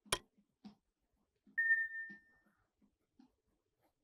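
A single sharp mouse-click sound, then about a second and a half later one short bell-like ding that rings and fades: the click-and-bell sound effect of an on-screen 'like and subscribe' button animation.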